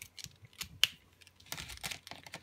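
Plastic paint pen being handled: a few sharp clicks and taps, the loudest a little under a second in, then a quick cluster of rustling clicks near the end.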